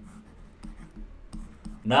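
Stylus scratching and tapping on a writing tablet while a word is hand-written, a few faint short ticks. A man's voice starts near the end.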